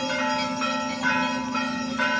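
Brass temple bells rung repeatedly by hand, fresh strikes about twice a second over a continuous overlapping ring.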